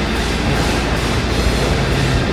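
Steady rumble of a motorcycle at speed: engine and wind noise picked up by a low-mounted action camera, with no breaks or changes.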